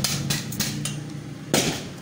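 A screwdriver working the plastic screw terminals of a magnetic tube-light choke to take its wires off: a few light clicks, then a sharper knock about one and a half seconds in.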